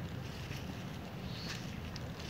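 Steady low rumble of wind buffeting a phone's microphone, with a faint brief tick about one and a half seconds in.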